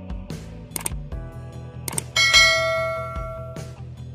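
Background music with a bright bell-like chime about two seconds in that rings out and fades over about a second and a half. The chime is the notification-bell sound effect of a subscribe-button end-screen animation.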